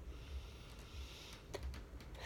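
Quiet pause of room tone: a steady low rumble with a faint hiss, and a couple of small clicks about one and a half seconds in.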